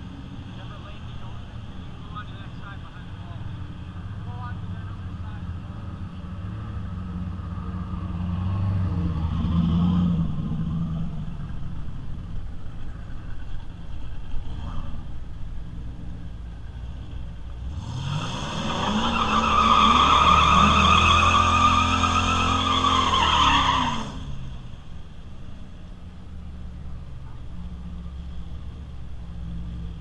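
A drag car doing a burnout: its engine revs up hard and holds high for about six seconds with the tyres squealing, then cuts off suddenly. Before and after, the engine idles and blips lower down.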